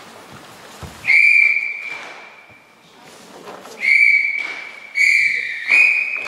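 A referee's whistle blown in four short blasts, about a second in, just before four seconds, at five seconds and near the end, each with a long echo off the sports-hall walls.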